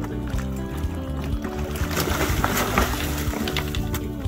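Background music with a steady beat, with a burst of water splashing at the surface about halfway through.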